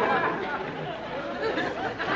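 Indistinct voices talking over one another.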